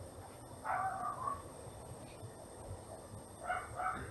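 Faint animal calls over low background noise: one longer call about a second in, then two short calls in quick succession near the end.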